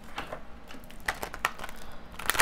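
A well-worn deck of oracle cards being shuffled by hand, the cards flicking and slapping against each other in short, irregular clicks.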